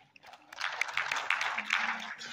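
Audience applauding, starting about half a second in and running on steadily.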